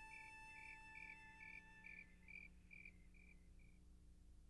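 Faint cricket chirping, about two chirps a second, fading out near the end, while a held harmonica chord dies away in the first half.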